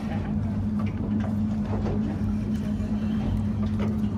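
A small fishing boat's motor running with a steady low hum.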